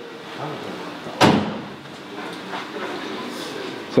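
A single door slam about a second in: the steel cab door of a 1972 Toyota Hilux pickup being shut.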